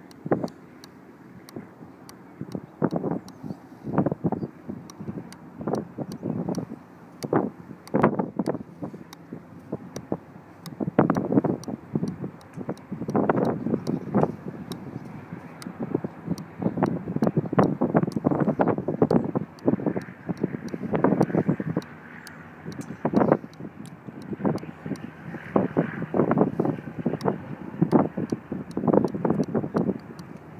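Wind buffeting the microphone in irregular gusts that swell and die away every second or two.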